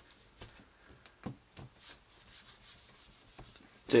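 A pre-moistened cleaner-primer wipe rubbing over an iPhone's glass screen in a series of faint, soft strokes, cleaning and priming the glass before a liquid nano coating goes on.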